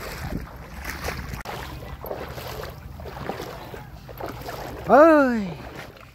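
Footsteps wading and sloshing through shallow floodwater and waterweed, with wind rumbling on the microphone. About five seconds in, a man shouts a loud "hey!".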